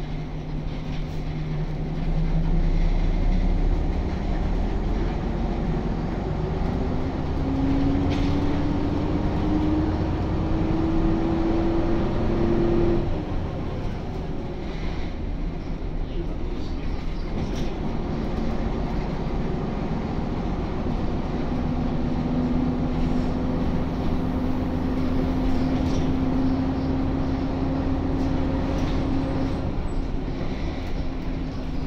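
A 1998 Jelcz 120M city bus under way, heard from inside the passenger saloon: the WSK Mielec SWT 11/300/1 diesel engine pulls with a whine that climbs slowly in pitch, breaks off about halfway through as the engine note drops, and returns steadier near the end.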